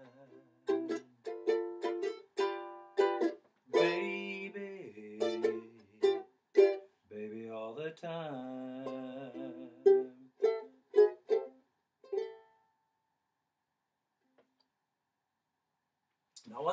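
Ukulele playing the closing bars of a song alone, a run of strummed chords high up the neck. The playing stops about twelve seconds in, leaving near silence.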